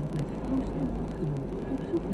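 Car interior road and engine noise while driving at moderate speed, picked up by a dashcam as a steady low rumble. A low voice talks faintly over it.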